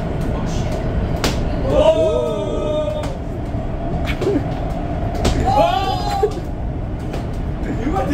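Metro train carriage running, a steady low rumble throughout, with voices talking in the background twice and a couple of sharp knocks.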